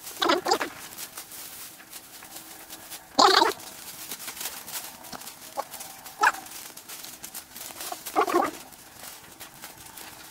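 A dog barking a handful of times, short single barks spaced a few seconds apart.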